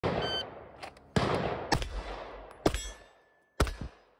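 A shot-timer beep, then gunfire: four loud shots spread over about two and a half seconds, each with an echoing tail. A thin ringing tone follows the third shot.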